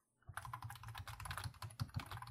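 Computer keyboard typing a quick, steady run of keystrokes, starting about a quarter of a second in.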